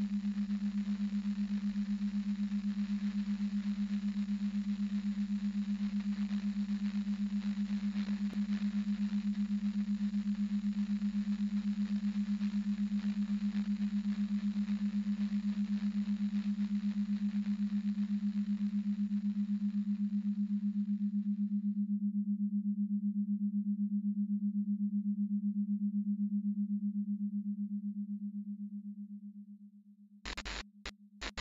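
A steady electronic hum held at one low pitch, with a faint hiss over it that stops about two-thirds of the way through; the hum then fades out near the end.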